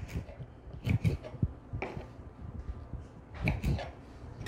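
Kitchen knife cutting through pieces of fresh marshmallow root onto a wooden cutting board: a handful of short, separate cuts and knocks, two in quick succession about a second in and two more about three and a half seconds in.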